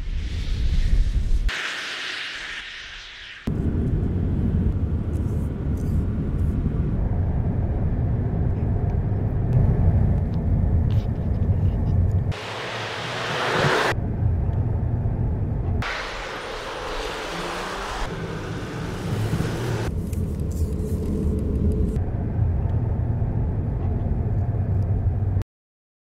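Mercedes-Benz S-Class saloon driving on the road: a steady low rumble of road and tyre noise, broken by several abrupt cuts, with brighter rushing stretches in between, and ending suddenly.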